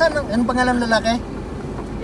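Steady low rumble of a car driving slowly, heard from inside the cabin. A voice talks over it for about the first second.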